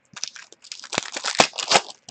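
Hockey trading cards handled in the hands: a rapid run of crinkling rustles and small clicks as the cards are slid and shuffled.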